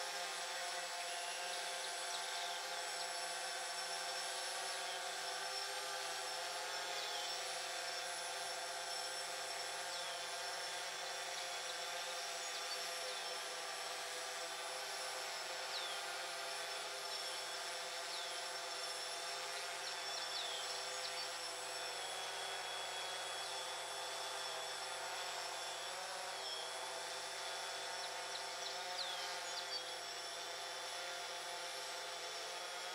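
Quadcopter drone propellers humming steadily, a layered buzzing whine whose pitch wavers slightly as the motors adjust to hold a hover. Short bird chirps come and go over it.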